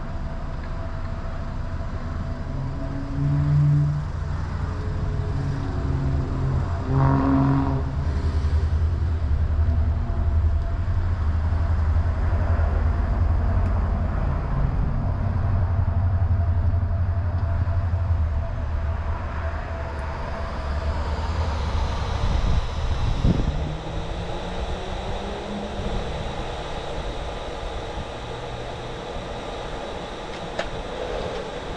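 Car creeping forward at low speed: a low engine and road rumble that swells midway and eases off near the end, with a brief knock a little before that.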